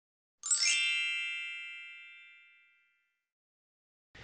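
A single bright chime, a transition sound effect, that comes in with a quick upward sweep about half a second in and rings away over about a second and a half, in otherwise dead silence.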